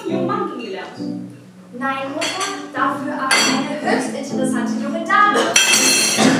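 Cutlery clinking against plates and glasses at a dinner table, with voices and music underneath; the clinks come thick and fast after the first couple of seconds.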